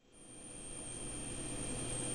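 Steady room noise with a faint electrical hum and a thin high whine, fading in from silence.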